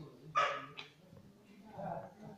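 A short, sharp animal call about half a second in, quickly followed by a second, shorter one, with a softer call near the end.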